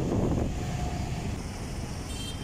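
Steady low rumble of a vehicle engine, with wind on the microphone.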